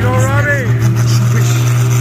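Engine of a pulling machine hooked to the sled, running with a steady low drone.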